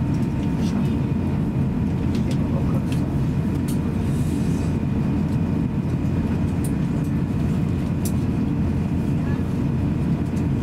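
Steady low cabin rumble inside an Airbus A350-900 taxiing, its Rolls-Royce Trent XWB engines at taxi idle, with faint steady whining tones over it and a few small clicks.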